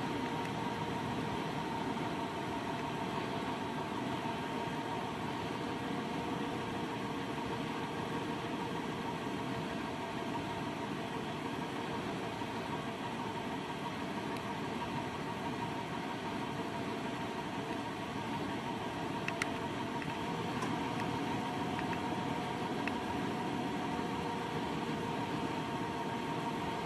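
A steady machine-like hum: several held tones over a constant hiss, unchanging throughout. A couple of faint clicks come about three-quarters of the way through.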